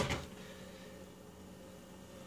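A quiet room with a faint, steady electrical hum; the last syllable of speech trails off at the very start.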